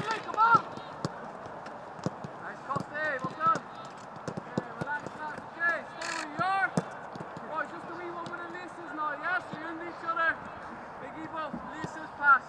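Footballs being kicked and passed on a grass training pitch: sharp, irregular thuds of boot on ball, with players' short shouted calls coming and going.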